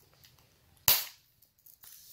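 A Neutrogena body mist spray giving one short hiss of spray onto bare skin about a second in.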